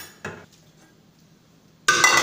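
Sliced sausage being tipped from a metal frying pan into a pressure cooker, the pan and utensil knocking and scraping on the pot's rim. It is a sudden loud metallic clatter with a ringing tail near the end, after a quiet stretch.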